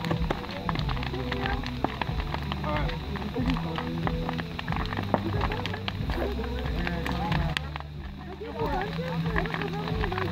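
Large wood bonfire crackling with many irregular sharp pops, under voices talking in the background.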